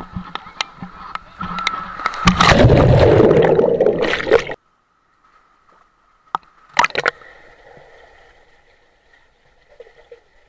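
Water rushing and sloshing around a rider on a water slide, picked up by a GoPro riding along. It turns loud about two seconds in and cuts off suddenly. After a silent gap, a couple of short, sharp splashes follow.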